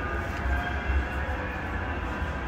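Bombardier Flexity M5000 tram approaching along street track, heard as a steady low rumble with faint steady high tones over city street noise.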